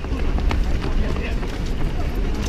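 Many runners' shoes slapping on asphalt, a dense patter of overlapping footfalls, with voices among the runners.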